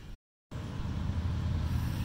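A brief total dropout where the recording cuts, then a steady low vehicle rumble.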